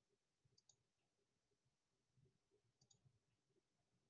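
Near silence, with two very faint clicks about two seconds apart.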